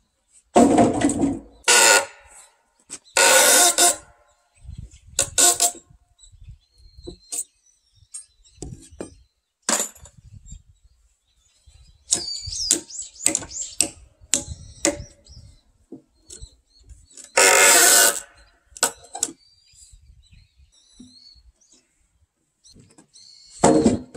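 Heavy wooden timbers being dropped and knocked onto concrete: a series of loud thuds and clatters every few seconds, with a run of lighter sharp knocks in the middle.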